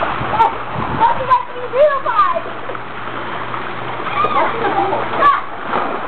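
Water splashing in a swimming pool as someone moves about in it, with people's voices calling out over the splashing in two short spells.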